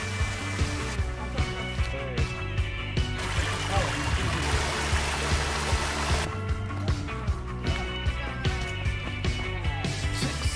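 Rock music with a steady drum beat. For about three seconds in the middle, the rush of a small creek tumbling over rocks rises up under it.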